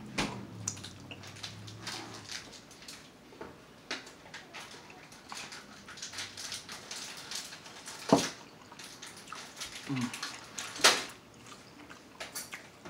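Close-miked wet chewing and lip-smacking of someone eating lobster meat, a run of irregular small clicks and squelches, with two louder sharp smacks about eight and eleven seconds in. A low hummed "mm" fades out in the first two seconds.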